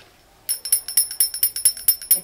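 Metal jingles shaken rapidly in an even rhythm, about seven strokes a second with a bright, high ringing, starting about half a second in.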